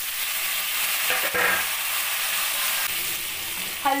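Hot oil in a kadhai sizzling as pieces of boiled elephant foot yam (suran) are tipped in, with a spatula stirring them. The hiss starts suddenly and stays steady.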